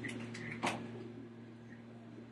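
Quiet room tone with a steady low hum and one faint brief sound a little over half a second in.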